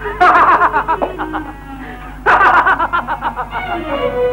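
A man laughing in two loud bouts, each about a second long, over soft background film music.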